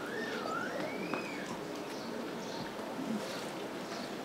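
Steady outdoor background noise from an open-air gathering. Near the start a single high, whistle-like bird call sweeps up, dips, then rises and falls, lasting about a second.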